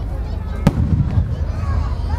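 Aerial firework shell bursting with one sharp boom about two-thirds of a second in, followed by a low rolling echo.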